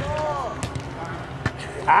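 Men's shouting around two sharp thuds of a soccer ball being kicked, about half a second and a second and a half in; a long shout begins at the very end.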